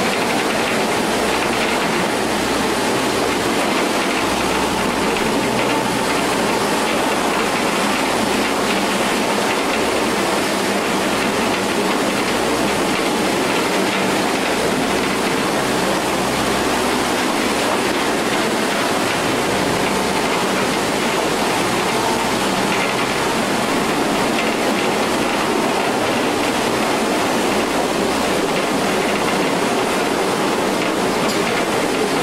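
Mine train running on rails through a rock tunnel, a steady rumble and rattle of wheels and cars that does not let up.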